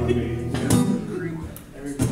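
Acoustic-electric guitar closing a song: sustained low notes, then one last strum about two-thirds of a second in that rings and fades away.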